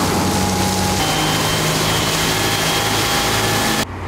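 Fire trucks running their pumps: a steady engine hum under the loud hiss of water jets spraying. The hum shifts slightly in pitch about a second in, and the sound cuts off abruptly just before the end.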